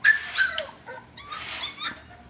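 Four-week-old standard schnauzer puppy whining and yipping: about four short, high-pitched cries, the loudest right at the start.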